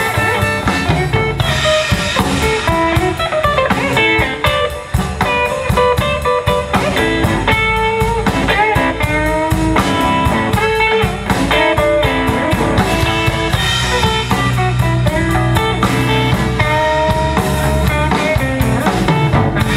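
Live blues band playing an instrumental passage: electric guitar, bass and drum kit, with a lead line full of bent notes.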